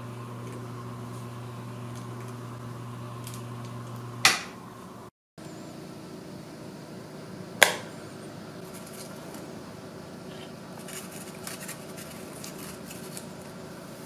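Small electric motor humming steadily, stopping with a sharp click about four seconds in. Later a knife clicks once against a plate, followed by faint light scraping.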